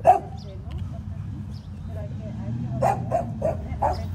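A dog barking: one sharp, loud bark right at the start, then a quick run of four barks about three seconds in.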